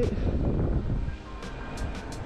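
Wind rumbling on the body-mounted camera's microphone while riding an electric unicycle along a street, with a few sharp clicks in the second half.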